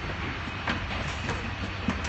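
Footsteps at a steady walking pace, a knock about every half-second, over a steady low hum.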